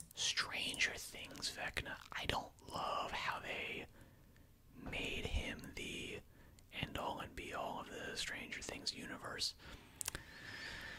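A man whispering close to the microphone, in three stretches with short pauses between them.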